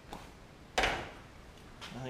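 A single sharp knock about three-quarters of a second in, dying away over about half a second, with a faint click just before it and another short knock near the end.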